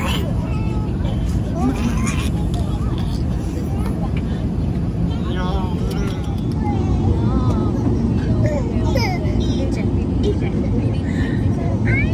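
Airliner cabin noise: the steady low drone of the jet engines and airflow, with faint voices over it.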